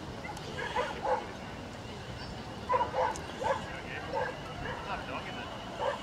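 A dog barking in short, high barks: a pair about a second in, then a quicker run of barks from just under three seconds in.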